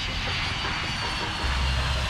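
Twin-engine jet airliner climbing low overhead after takeoff: steady jet engine noise with a deep rumble and a thin, high, steady whine.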